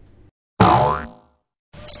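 A cartoon sound effect at a scene transition: one pitched tone with many overtones starts sharply about half a second in and fades out over about half a second. Short high chirps begin just before the end.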